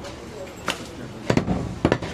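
A heavy cleaver chopping goat meat on a wooden chopping block: four sharp chops, the first about two-thirds of a second in and three more close together in the last second.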